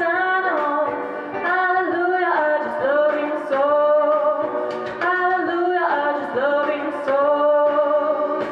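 A woman singing a jazz song into a microphone, holding long notes between short breaths.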